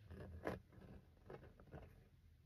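Faint handling noise of a vinyl record and its sleeve: soft rustling and scraping, with the loudest scrape about half a second in and a few lighter ones near the end.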